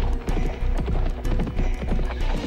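Quick run of horse hoofbeats over dramatic background music with a heavy bass.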